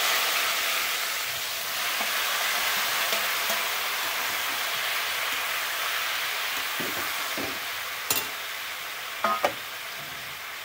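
Sliced vegetables sizzling steadily in hot oil in a metal wok as they are stir-fried and tossed with a spatula. The sizzle eases a little, and the utensil clicks and knocks against the pan about eight seconds in and again near the end.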